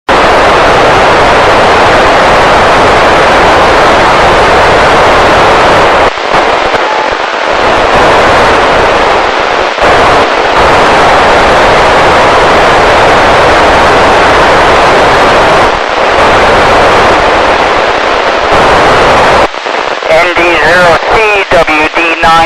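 Loud, steady FM receiver hiss from an Icom ID-5100 transceiver tuned to the satellite downlink, with no signal yet holding it quiet. The hiss drops out briefly a few times, and near the end a voice comes up through the noise.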